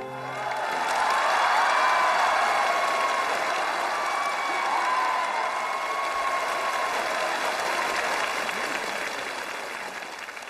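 Studio audience applauding and cheering, swelling over the first two seconds and then slowly fading, with music underneath.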